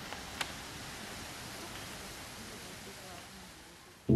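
Steady rush of a small rocky stream flowing beneath a footbridge, with faint distant voices and one sharp click about half a second in; the water sound fades out gradually toward the end.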